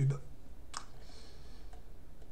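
A single computer mouse click, with a faint brief hiss after it, over a low steady hum.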